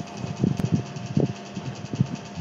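Steady background hiss and hum from an open microphone on a live call, with a couple of faint, brief low sounds about half a second and a second in.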